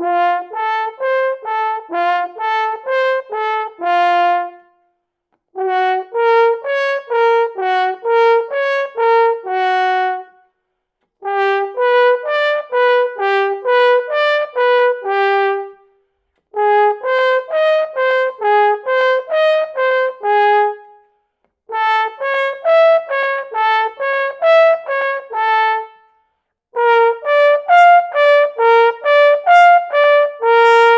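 French horn playing a loud power exercise in the high range: six phrases of accented arpeggio figures, each ending on a held note, with a short breath between phrases. Each phrase starts a half step higher than the last.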